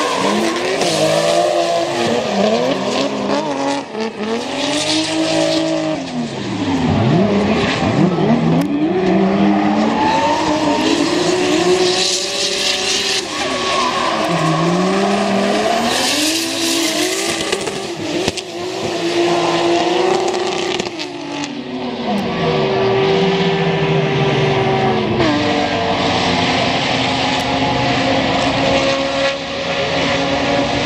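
Two drift cars sliding in tandem: their engines revving up and down over and over with the throttle, over continuous squeal from the spinning rear tyres.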